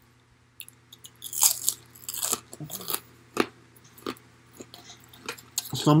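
Crunching and chewing of a crispy fried pork rind (Baken-ets pork skin) spread with pumpkin seed butter, close to the microphone. The crisp crunches begin about half a second in, come thickest in the first three seconds, then turn sparser.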